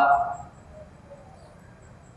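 A man's voice trailing off at the end of a phrase, ringing briefly in a reverberant room, then quiet room tone with a faint, evenly repeating high chirp.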